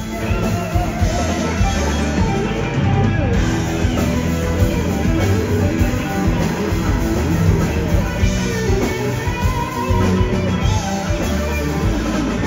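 Live blues-rock band: a Stratocaster-style electric guitar plays bending lead lines over electric bass and a drum kit.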